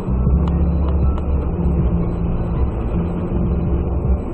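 A car driving, with a steady low engine and road rumble and two faint clicks about half a second and a second in.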